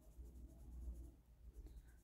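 Near silence with a faint, soft rubbing in the first second: hands handling a nail tip and a soft brush.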